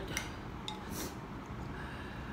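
A few short, faint clicks and taps of chopsticks against a ceramic noodle bowl as the noodles are stirred and the chopsticks are laid across the bowl's rim.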